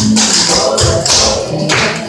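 Clogging shoe taps clattering on a hardwood floor as a group dances, in several quick bursts, over recorded music.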